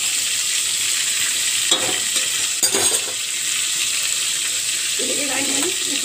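Soya chunks, tomatoes and yogurt frying in hot oil in an aluminium pot, a steady sizzle with a few sharp knocks of a metal slotted spoon against the pot about two seconds in.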